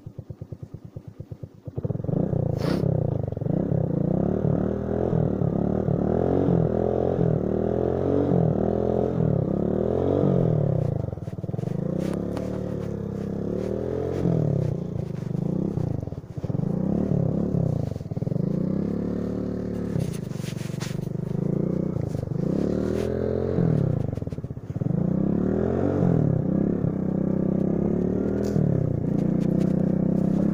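Motorcycle engine ticking over with even beats, then pulling away about two seconds in. Its pitch then rises and drops again and again as it revs up and shifts through the gears.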